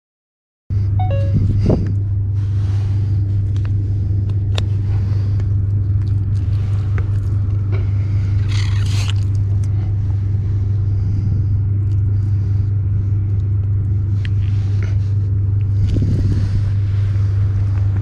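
Steady loud low rumble of wind on the camera's microphone, with faint scrapes and clicks from handling a cuttlefish on stone.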